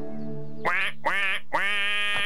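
A held piano chord dies away, then the duck character quacks three times, the third quack drawn out longer than the first two.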